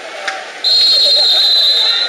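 A whistle blown in one long, steady blast lasting about a second and a half, starting just over half a second in, over the voices of the poolside crowd.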